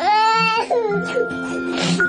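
A toddler crying: one loud, high wail in the first half-second or so, then a shorter falling cry, over background music.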